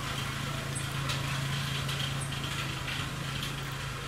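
Steady low hum of an idling vehicle engine, with a few faint taps over it.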